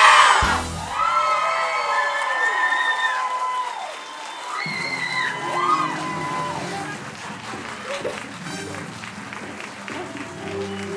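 The cast's singing ends on a loud final note right at the start. Then the audience cheers and applauds, with long high-pitched whoops and shouts sliding up and down for the first few seconds. Music comes back in underneath from about halfway.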